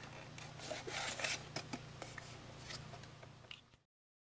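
Faint handling noise from a DVD drive turned over in the hand: its sheet-metal casing rubbing and shifting, with a few light clicks over a low steady hum. The sound cuts off abruptly near the end.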